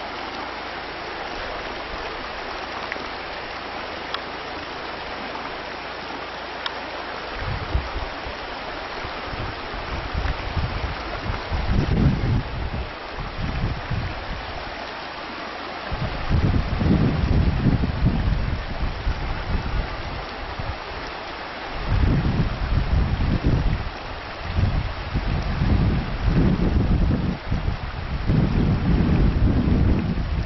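Shallow stony river rushing steadily over rocks, with bouts of wind buffeting the microphone as a loud low rumble from about a quarter of the way in.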